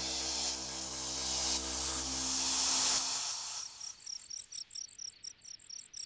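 Background score with sustained tones fades out about three seconds in, giving way to crickets chirping in a steady rhythm of about four or five chirps a second.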